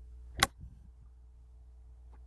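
Golf club head striking a golf ball once in a short flop shot: a single sharp click, with clean contact that nips the ball off the turf with little or no divot. A faint steady low hum runs underneath.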